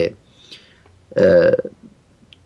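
A man's voice makes one held, steady vowel sound, a hesitation filler like 'eh', lasting about half a second and starting about a second in, after a short pause in his speech.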